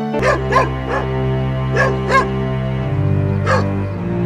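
A dog barking, six short sharp barks, several coming in quick pairs, over background music with long held low notes.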